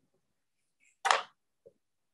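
Silence broken once, about a second in, by a woman's short breath.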